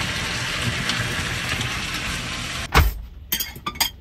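Food sizzling in a frying pan, a steady hiss, cut off about two-thirds of the way through by a loud knock, followed by several light clinks of kitchenware.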